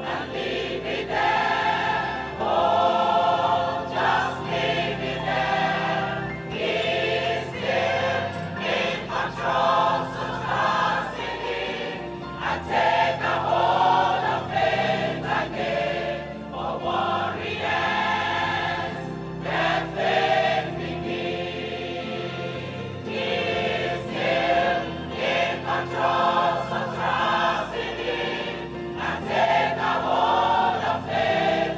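A church congregation or choir singing a gospel hymn together in phrases, many voices at once, over steady held low notes.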